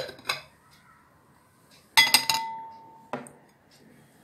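Glassware clinking as a glass plate is lifted off a glass bowl and set down: a light knock, then a loud clink about two seconds in that rings for about a second, and a lighter knock after it.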